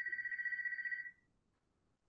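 An electronic telephone ringing: one trilling ring, a high tone warbling rapidly, that cuts off about a second in.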